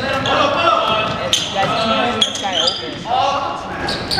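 Sounds of a basketball game in a gym: a basketball bouncing on the hardwood court, with players and spectators calling out.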